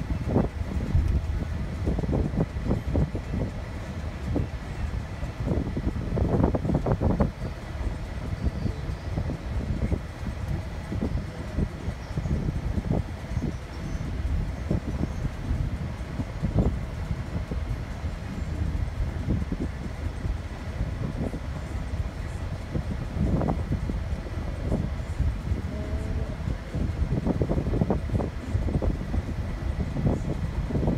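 Road noise inside a moving car's cabin: a steady low rumble of tyres and engine that swells and eases with the road, with a few louder bumps along the way.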